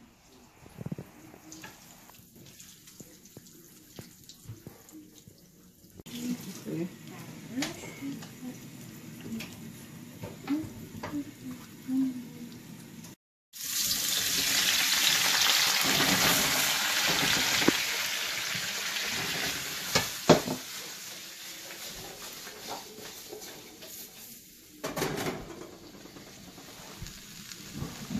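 Cut vegetables tipped into hot oil in a wok, setting off a sudden loud sizzle that slowly dies down over several seconds as the oil cools around them. A sharp clack of a utensil against the wok partway through the sizzle.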